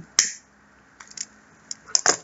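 A lighter struck with one sharp click just after the start, lighting a cigarette, followed by a few faint small clicks.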